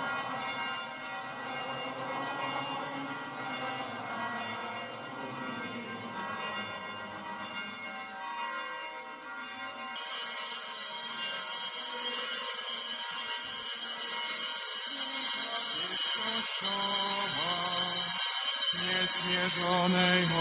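Church hymn music with singing, growing steadily louder through the second half. About halfway through the sound changes abruptly, brighter from then on, and near the end the sung hymn is at full strength.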